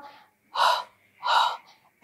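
A woman's breathing: two short, sharp breaths through the mouth, just under a second apart, the paced double breath of a seated Pilates spine twist.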